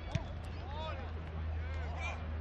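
Players shouting calls across an Australian rules football field, with one sharp thump of the ball being struck just after the start. A steady low rumble runs underneath.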